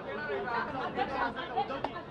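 Several voices talking over one another: press-conference chatter, with a brief sharp click near the end.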